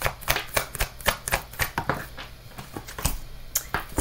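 A tarot deck being shuffled by hand: quick, irregular card clicks and slaps, several a second, thinning briefly past the middle.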